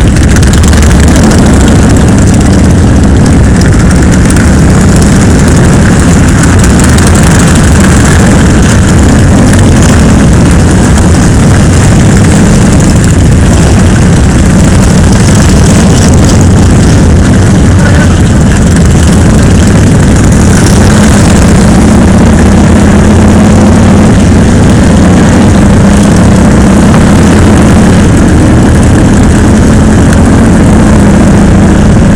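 Motorcycle engines running as a large group of motorcycles rides slowly together, a steady, very loud low rumble.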